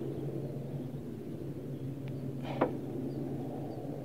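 A faint click and then a brief scrape as a broken piece of a burnt-through piston is worked loose from a cylinder bore of a stripped Renault Clio petrol engine. A steady low hum runs underneath.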